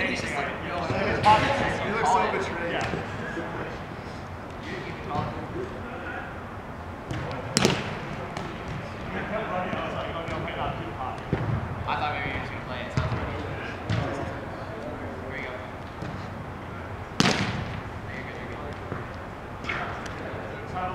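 Roundnet (Spikeball) ball being hit during a rally, with a run of small hits and two sharp smacks that stand out, one about a third of the way through and one near the end, over players' voices in a large indoor hall.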